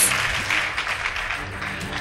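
Audience applause, dying down over the two seconds.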